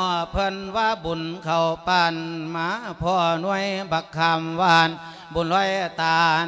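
A Buddhist monk singing an Isan-style sung sermon (thet lae) into a microphone: one amplified male voice in long, ornamented phrases with wavering pitch, with brief breaths between phrases.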